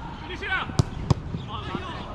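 Two sharp thuds of a football being struck, about a third of a second apart, over players' shouts.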